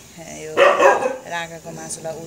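A dog barks once, loudly, about half a second in, amid other whining, voice-like sounds; insects chirp steadily in the background.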